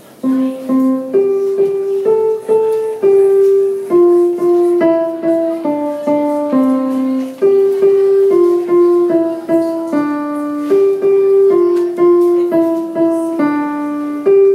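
Yamaha digital piano playing a simple melody one note at a time, about two notes a second, each note held and ringing in the middle register.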